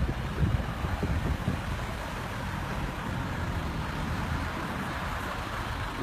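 Steady road traffic noise from cars on a terminal forecourt, an even rumble and hiss with no sudden events.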